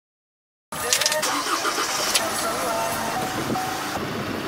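Silence that breaks off suddenly less than a second in, then car-park sound of a pickup's engine running, with people's voices and a few sharp clicks.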